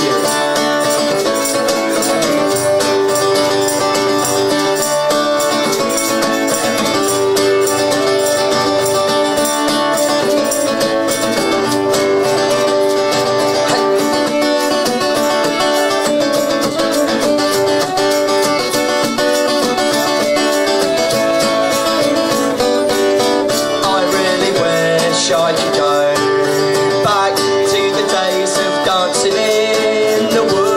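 Live acoustic folk music: strummed string instruments playing steadily through a passage with no sung words.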